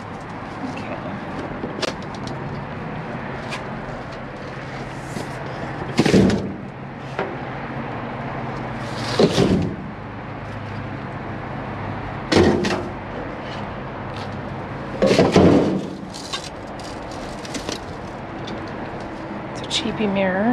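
Trash being shifted around inside a steel dumpster with a grabber tool: four loud scraping clatters of cardboard and debris, about three seconds apart, over a steady low hum.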